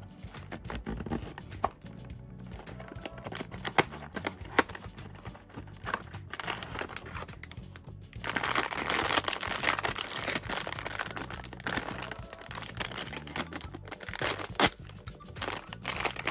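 A cardboard blind box being opened, with scattered clicks and rustles, then from about halfway a foil blind-box bag being handled and crinkled, louder and denser, over soft background music.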